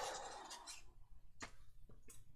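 The fading tail of a sigh, an exhaled breath, followed by a few faint taps and rustles of paper cutouts being handled.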